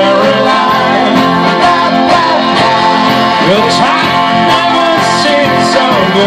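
Live pop-rock band playing amplified: electric guitars, bass, keyboard and drums, with a saxophone line on top and a few sliding lead notes near the middle.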